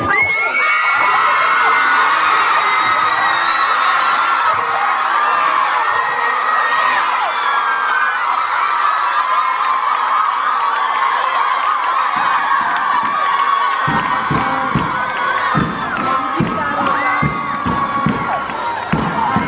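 A crowd of schoolgirls cheering and shouting together in high voices, a victory celebration, with some clapping. From about two thirds in, irregular low thumps join in.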